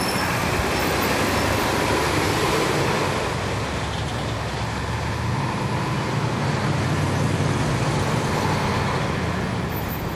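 Inside a 2011 NABI 416.15 (40-SFW) transit bus, its Cummins ISL9 diesel engine and ZF Ecolife six-speed automatic transmission running, a steady low engine drone with road noise. The drone swells a little in the first few seconds and again near the end.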